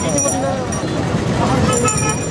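A crowd of people talking over one another, with a steady low rumble underneath.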